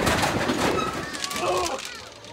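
Roller coaster mine train rumbling and clattering along its track, the noise dying down as the train slows out of a drop, with riders' voices calling out toward the end.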